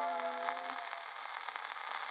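The last held notes of a 78 rpm record played on an acoustic horn gramophone die away within the first second. What remains is the record's surface crackle and hiss as the needle runs on in the groove.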